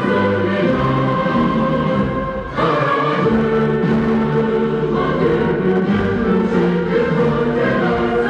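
A large group of schoolchildren singing together in unison over instrumental accompaniment, with a short break between phrases about two and a half seconds in.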